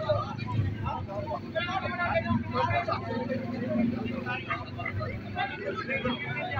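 Several people talking in the street, with a vehicle engine running steadily underneath.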